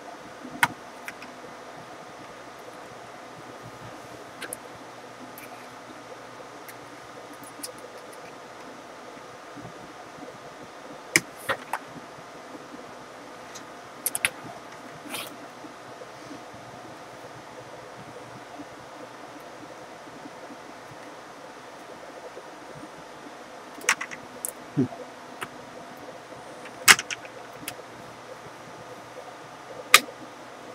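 Sharp plastic clicks and snaps, scattered and irregular, over a steady faint hum: a laptop's plastic LCD screen bezel being pried off by hand, its clips popping loose from the lid. The clicks come in small clusters: once about a second in, a few around the middle, and several more near the end.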